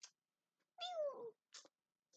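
A house cat meowing once, about a second in: a single call that falls in pitch, with a brief click just before it.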